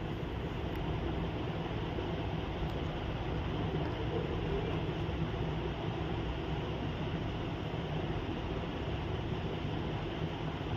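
Maize-flour puri deep-frying in hot oil in a kadhai: a steady sizzle and bubbling of the oil.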